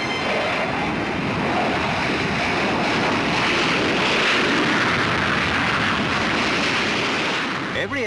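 Turbojet engine of a Jindivik target drone at full power on take-off, a steady rushing roar that swells about four seconds in and eases slightly near the end as the plane climbs away.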